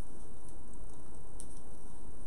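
Faint clicks and rustle of a small paper sticker being handled and peeled from its backing, over steady background hiss and hum; one click stands out near the end.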